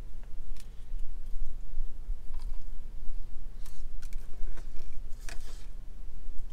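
A person biting into and chewing a slice of frozen ice cream pie with a chocolate crust: short, scattered crunching and mouth noises over a steady low hum.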